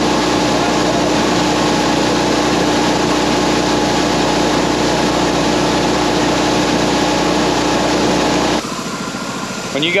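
Tractor and planter running while parked: a steady mechanical drone, a constant hum over an even rushing hiss. About eight and a half seconds in it drops suddenly to a quieter drone.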